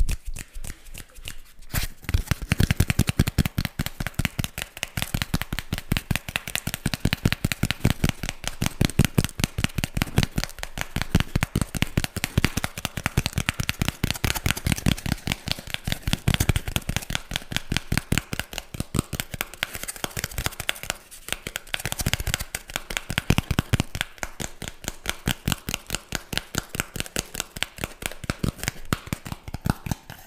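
Fingertips and nails tapping and scratching rapidly on a piece of brown cardboard held close to a condenser microphone, many light strokes a second, starting about two seconds in after a few quieter hand movements.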